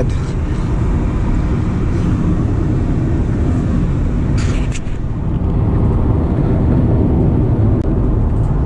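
Steady road and wind noise inside a Honda City e:HEV's cabin at highway speed. A brief rustle or clicks sound about four and a half seconds in.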